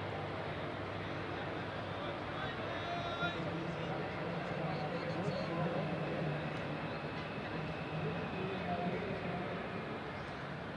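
Indistinct distant voices of players and spectators at a cricket ground, over a steady background of outdoor noise.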